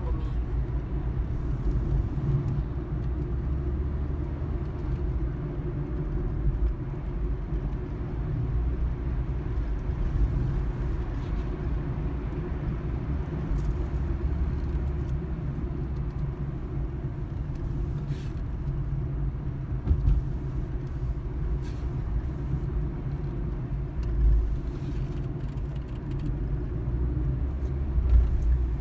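Steady low rumble of a car's engine and tyres heard from inside the moving car. Two brief knocks stand out, about two-thirds of the way in and a few seconds later.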